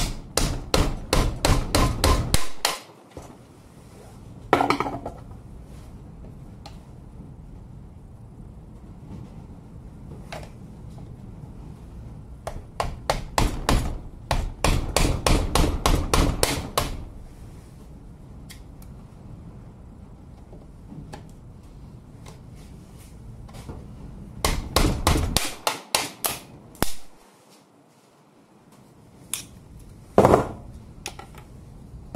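Quick runs of metal-on-metal tapping, about five strikes a second, in several bursts with pauses between: a tool struck against a screwdriver set into a cordless angle grinder's brush holder, to drive out a carbon brush fused into the plastic casing.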